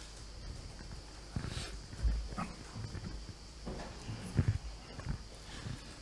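Quiet room tone with a steady faint hiss, broken by a handful of soft knocks and rustles, the clearest about two seconds in and again a little past four seconds.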